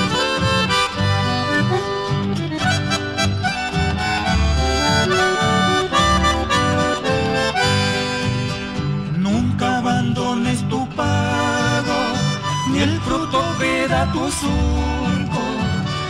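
Instrumental chamamé: an accordion playing the melody over a low, moving bass line with guitar accompaniment, no singing yet.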